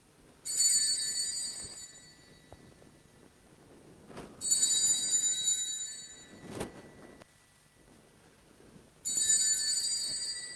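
Small altar bell rung three times, about four to five seconds apart, each ring bright and high and fading over a second or two. It marks the elevation of the chalice just after the consecration of the wine.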